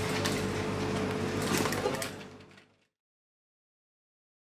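Steady room hum with a few sharp handling clicks, as of a cable and plastic connector being handled. It fades out about two and a half seconds in and then goes fully silent.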